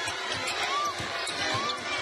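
A basketball being dribbled on a hardwood court, a steady run of bounces, with a couple of short sneaker squeaks and arena crowd noise behind.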